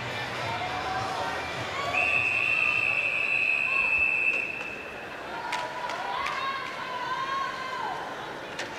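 Referee's whistle at a swim start: one long, steady, high blast of about two seconds, the signal for swimmers to step up onto the starting blocks, over the voices of a crowd in an indoor pool hall.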